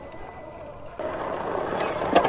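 Electric 1/10-scale RC rock crawler's motor and geared drivetrain running as it climbs over rock. The sound starts suddenly about a second in, with a few clicks near the end.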